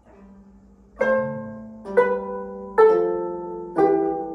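Two gayageum (Korean plucked zithers) played together in a slow first run-through. After a faint first second, four plucked chords sound about once a second, each ringing and dying away.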